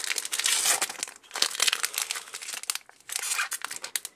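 Foil wrapper of a Pokémon Primal Clash booster pack crinkling and tearing as it is opened by hand, in crackly bursts with two short pauses.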